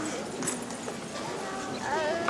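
A woman's heeled footsteps on a stage floor as she walks across, with quiet voices chattering in the audience.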